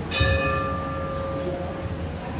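A temple bell struck once, ringing with several clear tones that fade away over about a second and a half.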